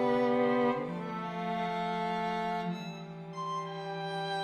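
String quartet playing slow, long-held chords, the harmony shifting about a second in and again near three seconds.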